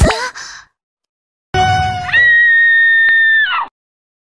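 A short cartoon sound effect with quick pitch glides right at the start, then after about a second of silence a girl's voice rising into a long high-pitched shriek that holds one note for about a second and a half and breaks off shortly before the end.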